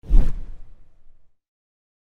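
A whoosh transition sound effect with a deep hit at its start, fading away within about a second.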